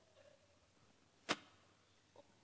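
A single sharp click or knock about a second into an otherwise quiet pause, in a large room.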